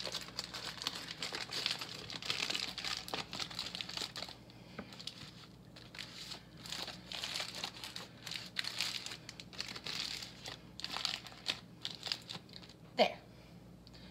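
Aluminum foil crinkling and crackling irregularly as its sides are rolled up and crimped by hand into a makeshift pan, with a quieter spell a few seconds in.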